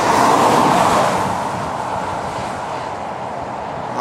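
Road traffic noise: the rush of a vehicle passing on the highway, loudest at the start and slowly fading away.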